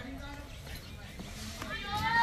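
Faint voices of people talking in the background over low yard noise, with a louder voice starting near the end.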